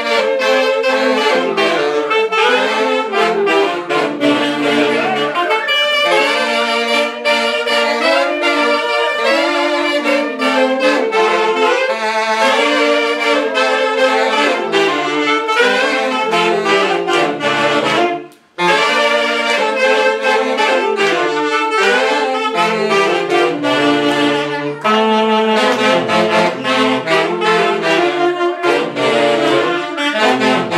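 A small live saxophone band, several saxophones playing a lively tune together. The music breaks off for a moment about two-thirds of the way through, then carries on.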